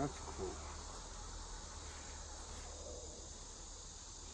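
Faint, steady insect chirring in the background.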